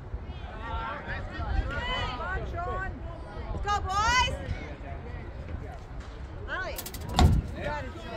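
Voices of players and onlookers calling out across a baseball field, raised and unclear, over a low rumble. A single sharp knock about seven seconds in.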